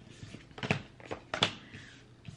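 Deck of tarot cards being shuffled by hand: soft rustling of cards with two sharp card snaps, about two-thirds of a second apart.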